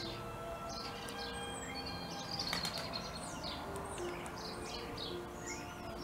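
Birds chirping with many short, falling calls, over slow, long-held music notes. A brief burst of rapid clicks comes about two and a half seconds in and is the loudest moment.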